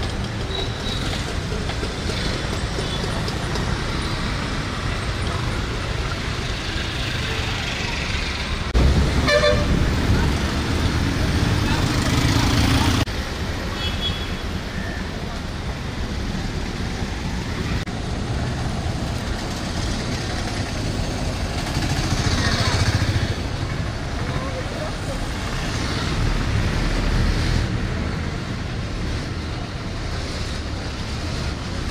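Busy street traffic with voices, with engines and vehicles passing. About nine seconds in, a vehicle horn sounds during a louder stretch of engine noise lasting about four seconds.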